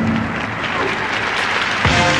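Arena audience applauding, with music from the circus band underneath.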